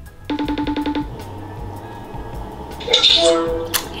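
FaceTime outgoing ring, a rapid trilling tone lasting under a second about a third of a second in, over background music with a steady beat. A brief set of steady tones follows near the end as the call connects.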